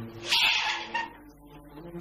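A woman's short, high whimpering cry, like a cat's mewl, starting sharply about a third of a second in and trailing off thinly by about a second.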